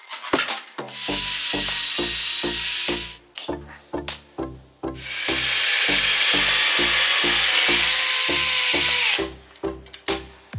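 A power tool with a spinning disc cutting a steel utility knife blade, in two runs, about two seconds and then about four seconds long, with a steady whine under the hiss. Background music with a steady beat plays throughout.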